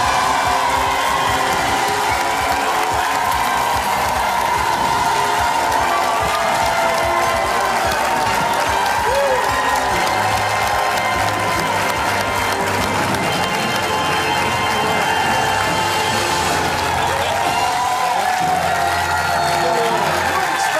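Studio audience cheering and applauding over the game show's win music, greeting the correct answer to the top-prize question. Deeper bass notes join the music about halfway through.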